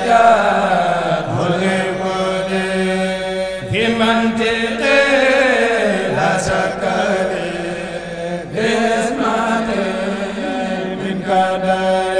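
Male voices chanting a Mouride khassida (a devotional poem) into microphones: a steady held note runs underneath while a lead voice slides through long ornamented melodic lines, with fresh phrases starting about four, eight and a half, and eleven seconds in.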